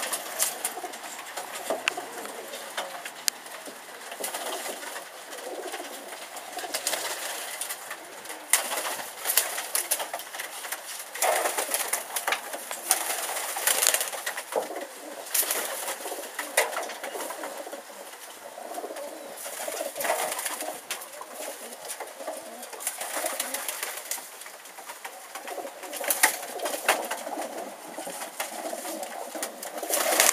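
A flock of Vouta pigeons cooing together in an enclosed loft, with many scattered sharp clicks and the occasional flutter of wings.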